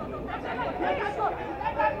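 Several voices chattering and calling out over one another across a football pitch.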